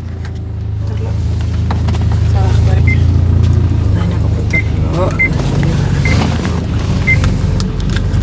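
Low, steady hum of a car running, heard from inside the cabin. Several short, high blips sound at intervals over it.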